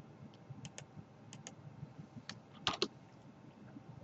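Computer mouse and keyboard clicks while a dimension is placed and its value entered: about eight short, sharp clicks, several in close pairs, the loudest pair about two-thirds of the way in.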